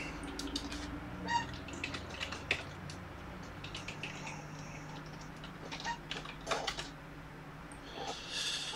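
Faint, irregular clicking of computer keyboard keys being typed, as in a quick web search.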